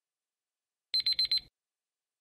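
Electronic countdown-timer alarm: a quick burst of about four rapid, high-pitched beeps about a second in, lasting half a second, signalling that the time is up.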